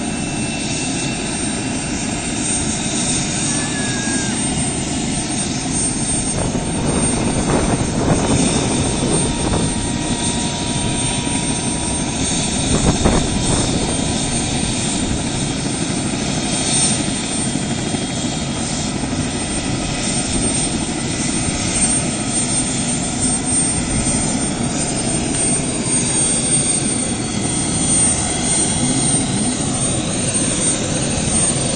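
Helicopter running steadily on the pad before lift-off: its engine and turning main rotor make a continuous noise, with a slightly louder swell about thirteen seconds in.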